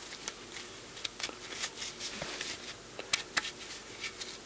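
Nylon webbing strap being handled and slipped onto a metal table-frame bar: light rustling with scattered small clicks and ticks, a few sharper ones a little past three seconds in.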